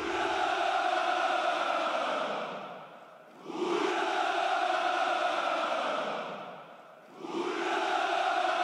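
Massed men's voices shouting a long, drawn-out cheer in unison, like a military hurrah. Each shout swells and fades over about three seconds: two full shouts, with a third starting near the end.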